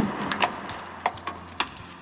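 A 2016 Toyota Tundra's driver door latch releases with a sharp click as the door is pulled open. A rustle and a few light jingling clicks follow over the next second or so.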